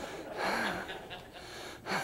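A man's short breathy huff about half a second in, over faint room noise, with no words spoken.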